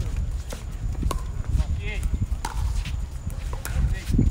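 Pickleball paddles striking a plastic pickleball: several sharp pops at irregular intervals during a rally.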